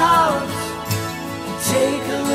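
Classic rock (AOR) band recording playing. A held, wavering melodic note fades out in the first half second over the continuing band.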